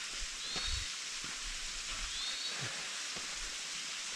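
Steady rush of a creek and small waterfall, with a bird giving two short chirps, one about half a second in and one past the halfway point, and soft footfalls on a dirt trail.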